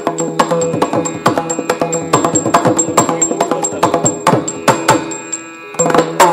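Maddale, the double-headed barrel drum of Yakshagana, played in a rapid run of hand strokes over a steady drone, with small hand cymbals (tala) ticking regularly to keep time. The drumming thins for a moment near the end, then picks up again.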